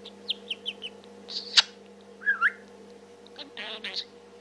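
Budgerigar chattering to itself: a quick run of short chirps, a sharp click, a warbling whistle, then a buzzy rasp near the end.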